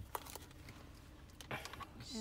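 Faint clicks and rustles of a plastic power cable and plug being handled, over a low steady hum inside a car cabin.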